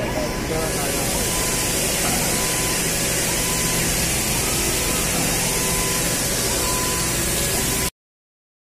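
Dry-dock site noise: a steady, loud high hiss, like a water or air jet, over a low machinery hum, with faint voices in the background. It cuts off abruptly just before the end.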